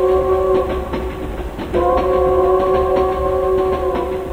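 Two long train-horn blasts, each a steady chord held for about two seconds, over a low rhythmic clatter, opening a music track.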